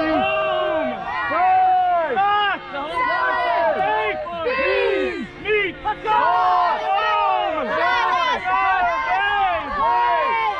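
Many voices shouting at once: ultimate frisbee players on the sideline yelling calls to teammates on the field. The short calls rise and fall in pitch and overlap with no pause.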